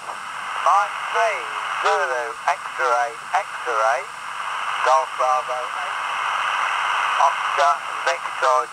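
Amateur radio voice traffic on the 40-metre band in lower sideband, received on a Lilygo T-Embed SI4732 and played through its built-in speaker. An operator's voice comes in short phrases over steady band hiss, with a pause of about a second and a half in which only the hiss is heard.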